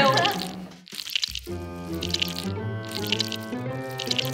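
Brief laughter, then background music with long held notes. Under it, gloved hands stir iron powder into slime glue in a glass bowl with a wet, squelching sound.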